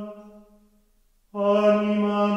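Harmonium (reed organ) chord dying away, a moment of silence, then a new full chord coming in sharply and held steady.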